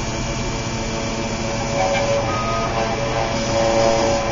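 Rotary engraving machine (New Hermes Vanguard 9000) running a job: the spindle motor and drive motors give a steady whir with a hum as the cutter engraves the plate, and a short higher motor tone sounds a little past the middle.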